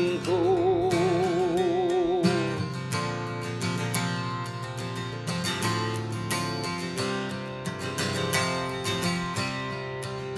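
Acoustic guitar strumming a country song. A male voice holds the last sung note with vibrato into the first couple of seconds, then the guitar carries on alone.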